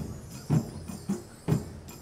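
Marching band percussion playing a slow, heavy drum beat: strong low drum hits in pairs, about half a second apart, with lighter hits and jingling percussion between them.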